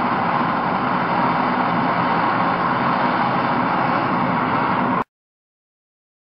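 MAPP gas blow torch burning steadily at a turned-up flame, a constant rushing hiss as it heats gold in a crucible to melting. The sound cuts off suddenly about five seconds in.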